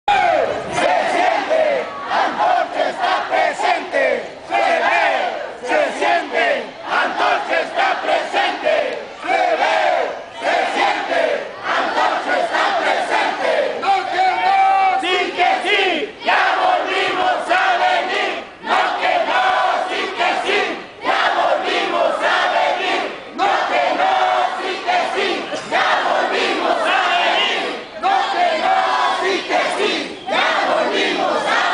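A large crowd of marching protesters shouting slogans together, in repeated loud shouts with short pauses between them.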